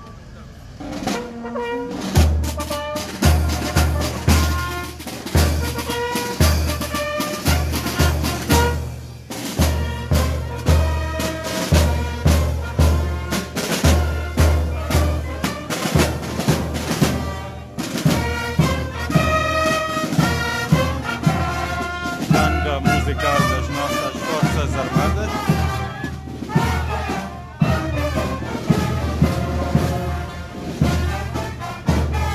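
Military marching band playing outdoors: brass (trumpets and sousaphone) over a steady beat of bass and snare drums, starting about a second in.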